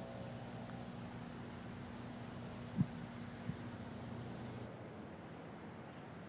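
Quiet outdoor ambience with a faint steady hum, broken about three seconds in by one short soft knock, a putter striking a golf ball, and a fainter tick just after. The hum cuts off near the end.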